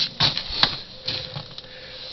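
A few scattered clicks and taps over a steady hiss.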